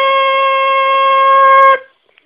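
The long closing note of a short logo jingle, held steady at one pitch and cut off sharply near the end.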